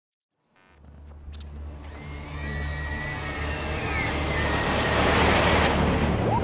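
Intro sound design for an animated title: a low droning rumble under a rising whoosh that swells louder and brighter over several seconds and cuts off abruptly near the end.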